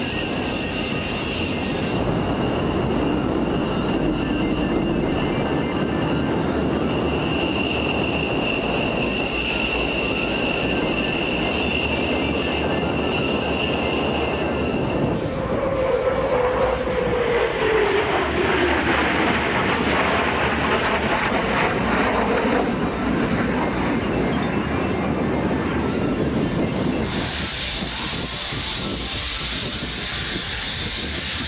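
F-15 fighter jet engines: a steady high whine as a jet taxis, then from about fifteen seconds in the broad roar of jets flying overhead, with a pitch that falls as one passes.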